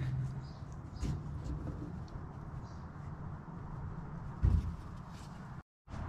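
Hands working a fuel line and its metal fittings at a fuel pressure regulator, making light clicks and knocks with one dull thump about four and a half seconds in.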